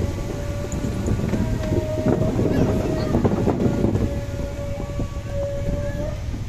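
Motorcycle ridden slowly: engine running under heavy wind rumble on the microphone, with scattered knocks. A thin steady whine drops out and comes back several times.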